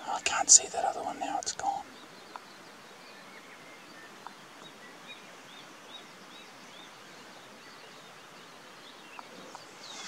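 A brief whispered remark close to the microphone at the start, then quiet outdoor background in which a small bird gives a string of faint high chirps, about two a second, for a few seconds.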